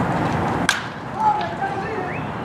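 A wooden baseball bat hitting a pitched ball: one sharp crack about two-thirds of a second in, over steady crowd noise. Voices rise from the crowd just after.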